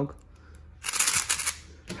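A 3x3 speedcube's layers being turned quickly, a brief rapid run of plastic clicks and rattles lasting under a second, around the middle.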